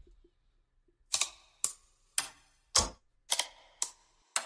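A run of sharp, evenly spaced clicks, about two a second, starting about a second in: the percussive opening of a film trailer's soundtrack.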